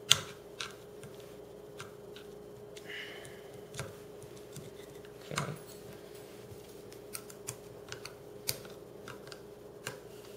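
Scattered small metallic clicks and taps of a flathead screwdriver working against the steel receiver and ejector of a Marlin 39A .22 rifle as the ejector is pushed down. The sharpest click comes right at the start, and a steady faint hum runs underneath.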